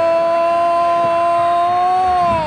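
Football commentator's drawn-out "Goooool!" goal cry: one long, loud vowel held at a steady pitch, rising slightly near the end.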